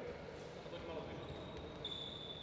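Quiet sports-hall ambience with faint shuffling and a few light knocks as players get down onto the wooden court floor into a push-up position. A faint thin high tone starts past the middle.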